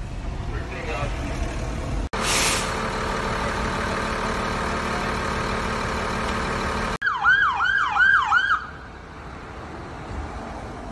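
Emergency vehicle siren in a fast yelp, its pitch sweeping up and down about four times in a second and a half, starting abruptly about seven seconds in. Before it comes a few seconds of steady engine and traffic drone.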